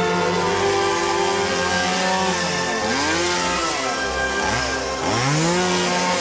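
Chainsaw revving up three times in the second half, each rev climbing in pitch and then holding, over background music.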